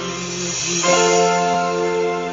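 Music: guitar chords ringing out with a bell-like sustain over a backing track, a new chord coming in just under a second in.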